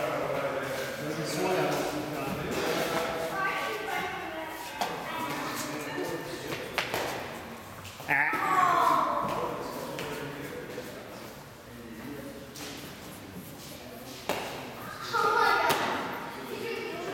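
Indistinct voices talking in a large echoing hall, with a few sharp thuds and knocks scattered through.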